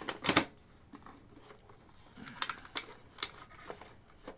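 Sharp plastic clicks and taps from handling the opened plastic housing of a medical scale and its parts: a loud pair near the start, then three more spaced out in the second half.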